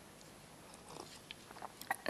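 Quiet room tone in a lecture hall, with a few faint short clicks in the second half.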